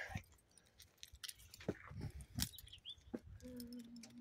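A few faint, scattered taps and clicks of footsteps on a concrete porch, with a brief low steady hum near the end.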